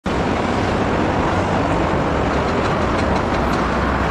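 Jakarta–Bandung high-speed electric train running past at speed: a steady rushing noise, with a few faint light clicks in the second half.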